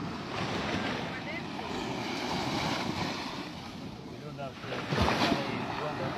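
Ocean surf washing onto the beach, with wind on the microphone; faint voices talk briefly near the end.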